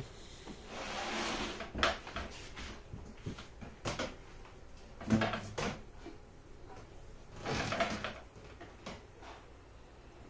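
Handling of a flexible corrugated plastic tube and plastic hive parts: rustling scrapes with several sharp knocks, busiest in the first half and near eight seconds, quieter towards the end.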